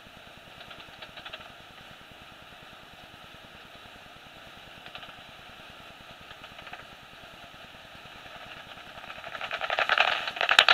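Magenta Bat 4 heterodyne bat detector hissing steadily, with a few faint clusters of soprano pipistrelle echolocation clicks. Near the end the clicks build into a fast, louder run as a bat comes within range.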